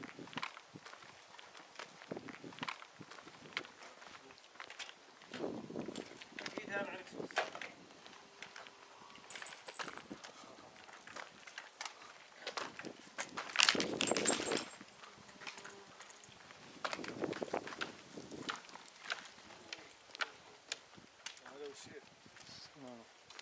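Footsteps and handling noise from a camera carried by someone walking, with indistinct men's voices coming and going. The loudest of these is a short burst about two-thirds of the way through.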